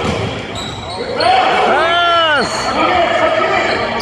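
Basketball bouncing on a hardwood gym floor in a reverberant gymnasium, amid spectator voices, with a drawn-out rising-and-falling squeal about halfway through.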